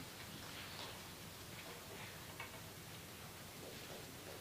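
Faint, scattered clicks and taps of a metal music stand being moved and set down on a wooden stage.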